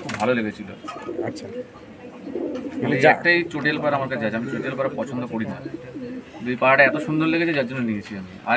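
Domestic pigeons cooing, low and drawn out, with a man's voice speaking a few words over them.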